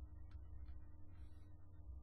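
Quiet room tone: a steady low hum with a couple of faint short clicks in the first second.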